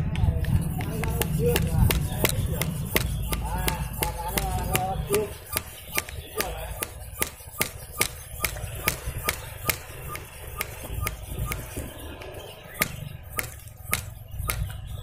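Hand-operated sprayer-type pump on a homemade PVC pneumatic fish spear gun being pumped over and over to build air pressure before a shot. Each stroke gives a sharp click, at a quick regular rate of roughly two to three a second.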